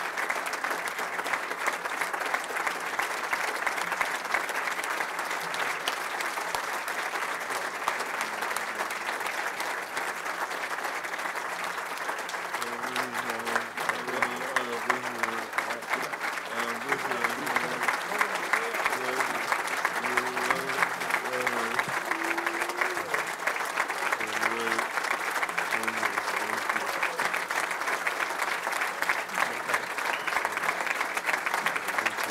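A banquet audience applauding: a long, steady ovation of many clapping hands that lasts the whole stretch. Faint music or voices sit underneath in the middle part.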